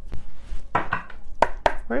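A deck of tarot cards being shuffled by hand: a run of sharp card slaps and taps, with the loudest strokes in the second half.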